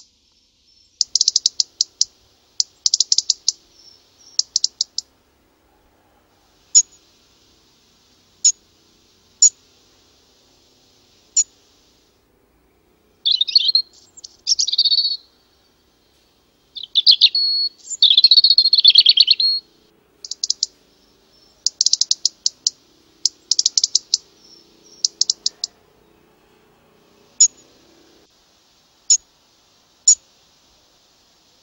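Small songbird calling: high rapid clicking trills in short bursts, single sharp ticks a second or two apart, and two longer warbled song phrases in the middle.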